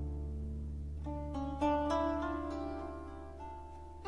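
Harp music: a low note held underneath while higher notes ring out, then a short run of about four single plucked notes between one and two seconds in, left to ring and fade away.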